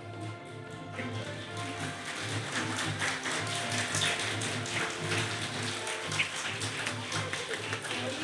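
Audience applauding with many rapid, dense claps, building up about a second in, over background music.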